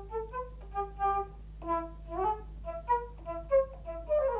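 A flute-like whistled run of short notes, some sliding up or down in pitch, over a faint steady low hum.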